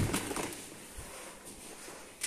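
Soft rustle of a shopping bag as a plastic cleaner bottle is pulled out of it, fading within the first half second, then quiet handling with a light knock about a second in.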